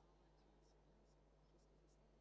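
Near silence: a faint steady low hum, with a faint murmur and a few scattered faint ticks.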